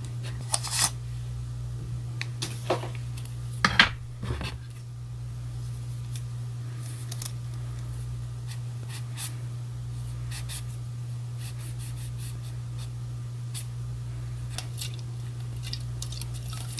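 Scissors snipping paper: a few sharper cuts in the first five seconds, then many lighter, quick snips, over a steady low hum.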